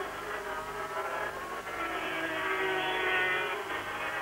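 Engine note of a 500cc Grand Prix racing motorcycle at speed on the track, steady with its pitch wavering slightly up and down.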